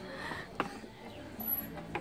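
Quiet outdoor background with two short faint clicks, one about half a second in and one near the end.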